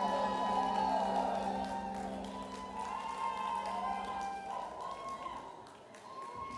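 A live band's final chord is held and fades away, with the audience cheering over it.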